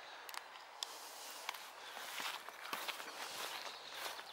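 Footsteps through long grass and leafy meadow plants: a steady, fairly faint rustle with a few sharp clicks scattered through it.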